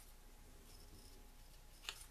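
Near silence: faint rustles and a light click from cardstock flower pieces being handled, over a low steady room hum.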